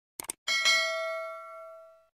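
Sound effect of a notification bell being clicked: a quick double click, then a bell ding that rings out and fades over about a second and a half.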